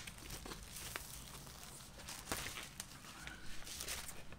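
A record's inner sleeve rustling and crinkling as it is handled with the vinyl LP inside, with a few sharp ticks of the sleeve edges against hands and card.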